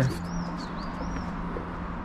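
A small songbird calling with a repeated high, arching note, about three a second, that stops just over a second in. Under it runs a steady rush of flowing river water.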